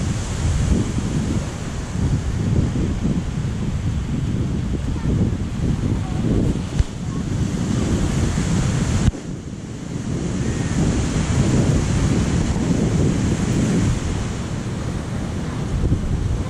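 Wind buffeting the camera microphone in gusts, over the steady wash of ocean surf. The noise drops suddenly about nine seconds in, then builds again.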